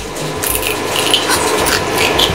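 Close-up eating sounds: a dense scatter of small clicks and crunches as food is picked up from the plate and chewed.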